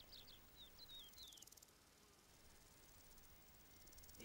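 Faint outdoor field ambience with a few short, high, falling bird chirps in the first second and a half, then near silence.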